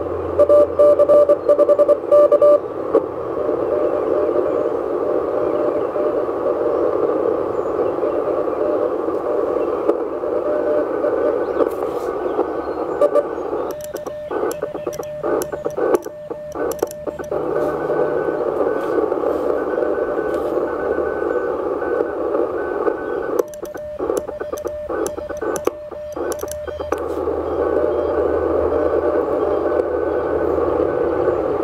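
Mission RGO One transceiver's receiver hiss on the shortwave band, with a very faint, intermittent Morse code signal barely above the noise. Keyed Morse sidetone beeps are heard at the start and in two short bursts of sending partway through, and the band noise cuts out while the sending is keyed.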